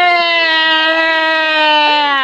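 A person imitating a cow with one long, loud, drawn-out "moo", its pitch slowly falling.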